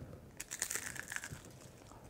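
A crisp baked parmesan tuile crunching as it is bitten and chewed. A crackling burst starts about half a second in and thins out over the next second.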